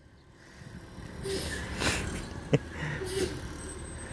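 Low rumble of a CNG garbage truck's engine as the truck drives off at a distance, rising from near silence about half a second in. A breathy whoop is heard between one and two seconds in, and a sharp click comes a little later.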